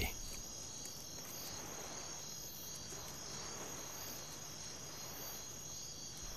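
A faint, steady chorus of night insects such as crickets, a continuous high-pitched chirring with no breaks.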